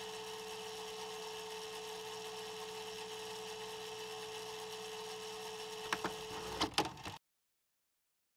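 A faint, steady electronic hum with one held tone. A few sharp clicks come about six seconds in, then the sound cuts off abruptly into silence.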